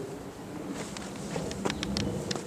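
An insect buzzing steadily close to the microphone in a forest, with a scatter of short sharp clicks starting a little under a second in.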